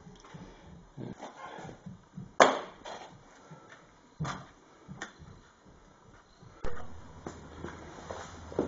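Scattered knocks and light clatter of small metal and rubber parts being handled on a steel workbench, the loudest about two and a half seconds in. A steady low hum comes in near the end.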